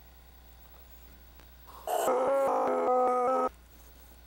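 Low steady hum, then about halfway in a person's voice makes a wordless, even-pitched vocal sound effect in short pulses for about a second and a half.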